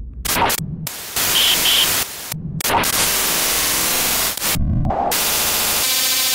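Glitch-style electronic static sound effect: loud bursts of white-noise hiss that cut out and restart several times. There are two short beeps about one and a half seconds in and a buzzing tone near the end.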